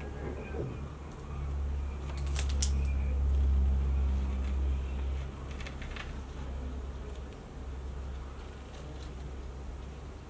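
A low, steady hum that swells for a few seconds about a second in and then settles back, with a few faint clicks a couple of seconds in and again near six seconds.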